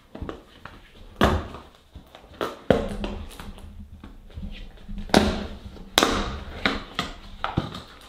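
Cardboard box and clear plastic packaging handled by hand as it is opened: a string of rustles, taps and knocks about a second apart, the loudest about five and six seconds in.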